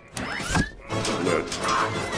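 Animated film soundtrack: score under a sharp mechanical hit about half a second in and a short rising squeal, with a man shouting near the end.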